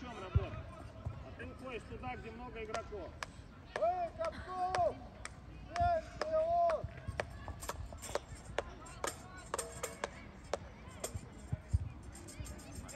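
High children's voices calling out across an outdoor football pitch, with two longer drawn-out calls in the middle. Scattered sharp knocks and clicks follow in the second half.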